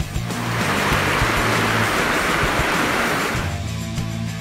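A rushing noise that swells and fades over about three seconds, over background music.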